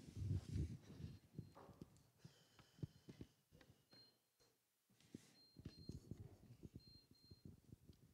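Near silence: faint room tone with scattered soft knocks and rustles from handling at a wooden pulpit, quietest around the middle.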